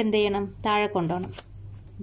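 A woman's voice saying a number, then a soft rustle of a paper sheet being handled and a single sharp click about halfway through.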